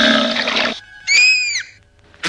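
Cartoon sound effects: a loud hiss that stops about three quarters of a second in, then a short squeal that rises and falls in pitch.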